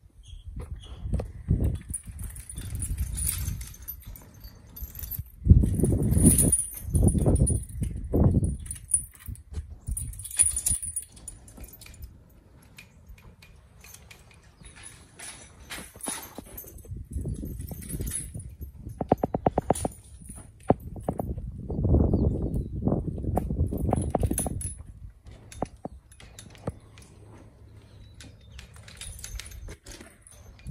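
Harnessed mules shifting and stepping on a wooden plank barn floor, with hooves knocking and harness chains and buckles jingling, in uneven bursts that are loudest about six seconds in and again just past twenty seconds.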